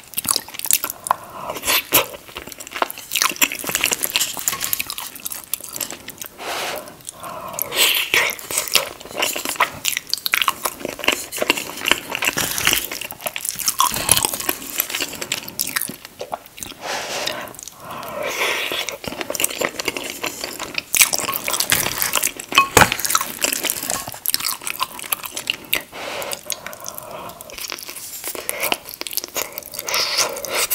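Close-miked chewing of cheesy shepherd's pie (ground beef, vegetables, mashed potato and melted cheese), a dense, irregular run of wet mouth clicks, smacks and soft bites.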